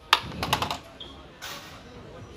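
Plastic blister packs of diecast toy cars clicking and rustling as they are handled and pulled off store pegs, with a quick run of sharp taps in the first second and quieter handling after.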